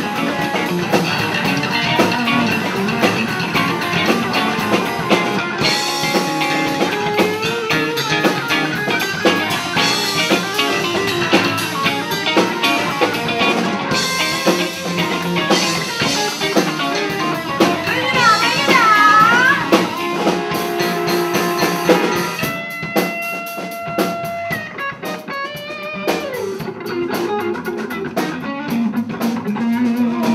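Live blues band playing an instrumental stretch with electric guitars, bass guitar and drum kit. About two-thirds of the way through, a lead line bends notes up and down with a wide vibrato. The band plays quieter and sparser over the last few seconds.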